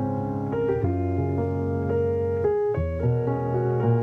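Solo piano music: a jazz medley of held chords under a moving melody line.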